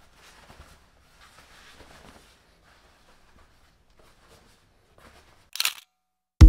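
Faint rustling of a woven pale-grey curtain being pulled and straightened by hand, over quiet room tone. A brief louder burst of noise comes near the end, then silence.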